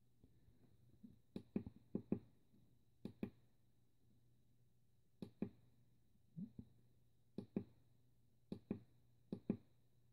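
Small tactile push buttons on a kit digital oscilloscope clicking, each press giving a quick double click of press and release, about eight times in all.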